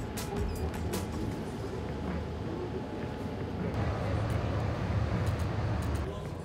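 Large indoor room noise: a steady low rumble with indistinct background chatter, and a few sharp clicks in the first second.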